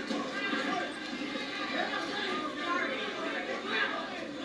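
Many overlapping voices shouting and talking at once, a crowd heard from a television news broadcast.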